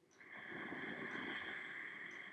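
A single faint, long breath, lasting about two seconds.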